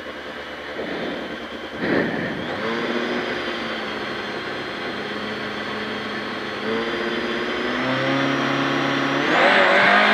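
Peugeot 206 XS Group A rally car's four-cylinder engine, heard from inside the cabin, held at steady raised revs on the start line during the countdown, with a brief throttle blip early on. About nine seconds in the revs and loudness jump as the car launches off the line.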